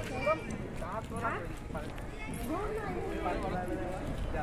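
Men's voices talking nearby without clear words, with one short sharp knock just after the start.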